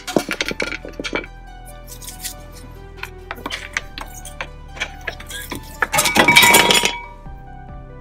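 Background music over sharp metal clinks from a flathead screwdriver prying a front brake caliper off its bracket, with a loud burst of metal rattling and scraping about six seconds in.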